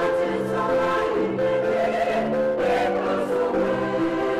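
A choir singing in sustained chords, the notes changing every half second or so.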